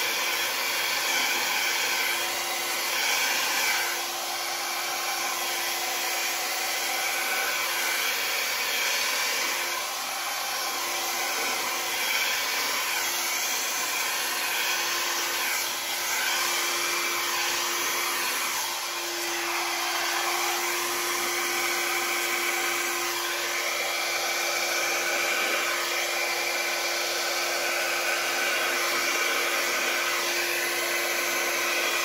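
Handheld electric hair dryer blowing steadily over wet acrylic pour paint to speed its drying: a continuous whoosh of air with a low motor hum that grows a little stronger about two-thirds of the way through.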